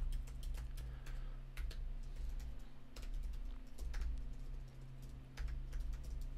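Computer keyboard typing: irregular keystrokes in short runs, over a steady low hum.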